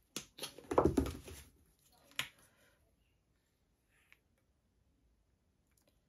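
Plastic paint bottles being handled on the work table: a short burst of knocking and rustling about a second in, then one sharp click a second later.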